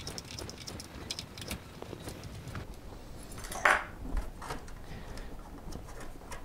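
Small screwdriver backing a self-tapping screw out of the plastic battery cover on the underside of a toy RC car. A run of light clicks and plastic handling knocks, densest in the first second and a half, and a brief scrape or rustle about three and a half seconds in.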